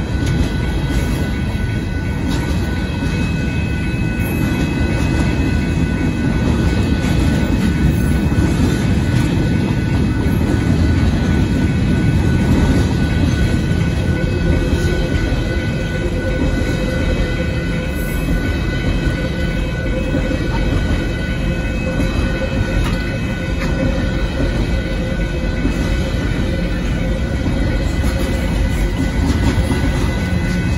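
Union Pacific mixed freight train's cars rolling past a grade crossing: a loud, steady rumble and rattle of wheels on rail, with thin steady high tones running over it.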